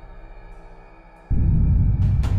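Dramatic soundtrack music: a quiet held drone, then a sudden deep boom about a second and a quarter in that rings on loudly.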